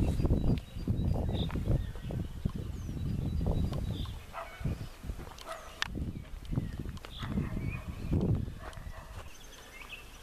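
Footsteps on a dirt path with irregular low rumbles on the microphone. Birds chirp briefly now and then in the background.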